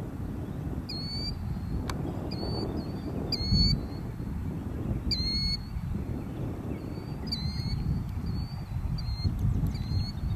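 Wind buffeting the microphone, with short, high-pitched chirping calls repeated about once a second, each ending in a quick downward hook.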